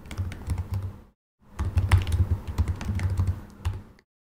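Typing on a computer keyboard: a run of quick keystroke clicks, with a brief dead-silent break about a second in.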